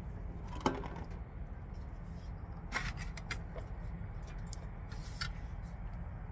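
Steady low engine rumble, with a few short, light clicks and clinks of small objects being handled: about a second in, around three seconds in, and a little after five seconds.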